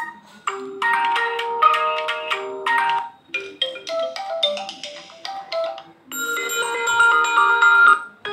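An Oppo A53s phone speaker playing its built-in ringtone previews one after another: three short melodic tunes, each cut off abruptly when the next ringtone in the list is tapped.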